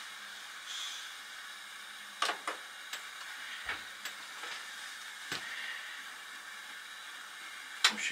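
Beko front-loading washing machine just switched on and still mostly quiet: several faint clicks over a low steady hiss.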